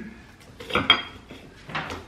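Cutlery clinking against a plate a few times while eating, the sharpest clink about a second in with a brief metallic ring.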